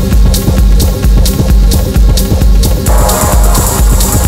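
Techno music from a DJ mix: a steady four-on-the-floor kick drum under a sustained low bass tone and regularly spaced hi-hats. About three seconds in, a hissing noise wash comes in over the top.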